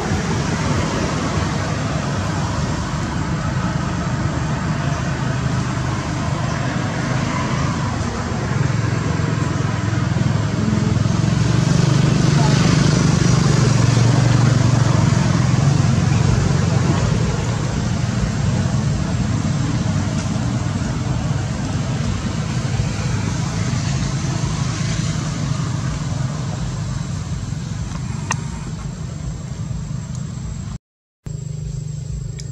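Steady road-traffic noise, a low rumble that swells for a few seconds around the middle as a vehicle passes.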